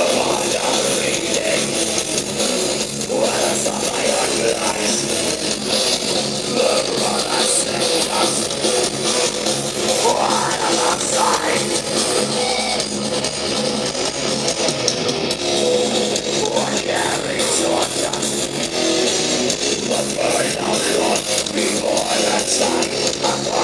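Black metal band playing live, heard from the crowd: distorted electric guitars and drum kit in a dense, loud, unbroken wash with little low end.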